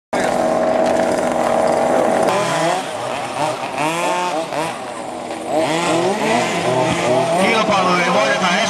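Several radio-controlled model cars' small motors racing together. There is a steady pitch for about the first two seconds, then overlapping whines that rise and fall over and over as the cars speed up and slow down around the course.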